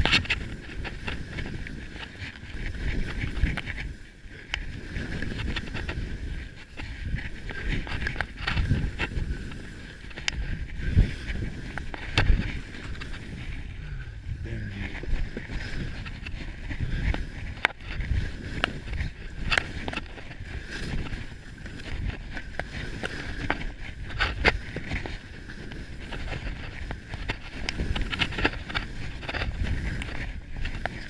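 Skis scraping and hissing over snow on a steep descent, with wind rushing over the microphone, and irregular sharper scrapes and knocks throughout, a couple of louder ones near the middle.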